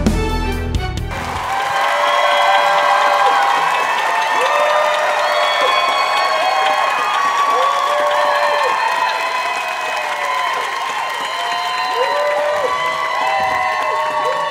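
Show theme music with drums cuts off about a second in, giving way to a studio audience applauding and cheering, many voices rising and falling over the clapping.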